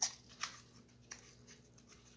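Small old cardboard box being opened by hand: three short crackles and clicks of the paperboard flap, the first the loudest.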